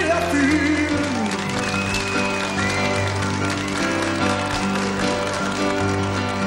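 Slow ballad accompaniment on an electronic keyboard, sustained chords held between sung lines. A held vocal note slides down in pitch in about the first second and a half.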